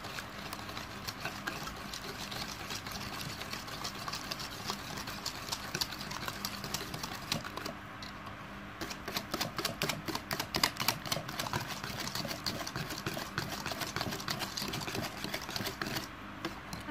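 A hand wire whisk beats an egg into creamed ghee and sugar in a bowl, making a rapid, even run of clicks as the wires strike the bowl. About halfway through it stops for a moment, then starts again with louder, sharper strokes.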